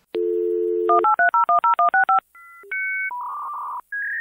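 Telephone dial tone for about a second, then about eight touch-tone digits dialed in quick succession, followed by a few other steady electronic phone tones.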